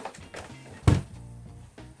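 A single dull thunk about a second in as a PlayStation 4 console is handled and stood upright on a desk, over a faint low steady hum.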